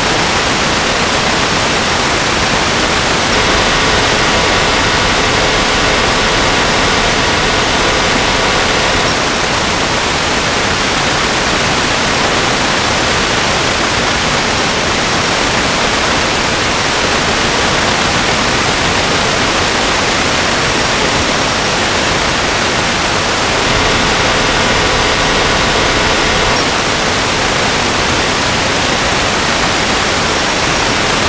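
Loud, steady static hiss covering the whole recording, with no words coming through. Twice, for a few seconds each, a faint steady tone with overtones shows through the hiss.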